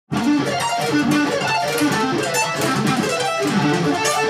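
Electric guitar with distortion playing fast sweep-picked arpeggios, rapid runs of notes rolling up and down the strings, starting abruptly right at the beginning.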